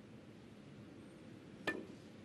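A single sharp click near the end as the snooker cue tip strikes the cue ball, which sits close to the pack of reds. The click has a short ring and stands over a quiet, steady background hush.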